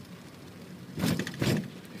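Steady low hiss of road and engine noise inside a car being driven, with a man's short spoken word about a second in.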